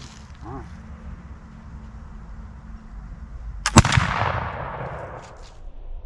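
A 20-gauge Crispin flintlock muzzleloading shotgun fired with a 100-grain powder charge of #6 shot. There are two sharp cracks a split second apart, the lock's ignition and then the main charge going off, about three and a half seconds in. The report then dies away over about a second and a half.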